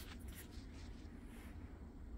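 Faint, brief rustling of bedding fabric, heard a few times.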